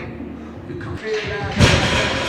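Voice sounds without words, then one loud slam about three-quarters of the way through, with a brief ring after it.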